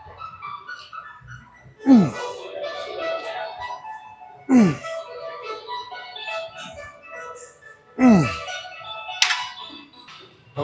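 A man's short grunts of effort, falling in pitch, three of them about three seconds apart as he strains through reps of a cable rope pull, over steady background music.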